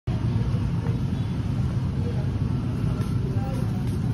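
Steady low background rumble that does not change, with faint voices.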